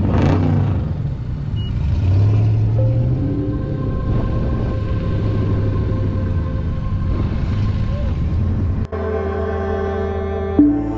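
Steady low rumble of a car engine running nearby. About nine seconds in it cuts off abruptly and is replaced by ambient background music with long held tones.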